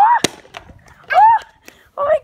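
A plastic water bottle hitting asphalt once with a sharp smack just after the start, between two short high-pitched calls from a young child.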